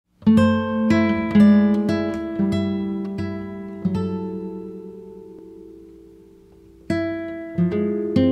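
Background music on acoustic guitar: a run of plucked notes, then a held note slowly fading before the playing starts again near the end.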